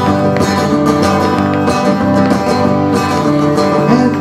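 Two guitars, one an acoustic, strumming a steady instrumental passage of a folk song between sung lines, played live through a PA.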